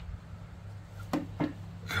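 Two short metallic clicks about a quarter second apart as disc brake pads and their spreader spring are shoved into the rear brake caliper, over a steady low hum.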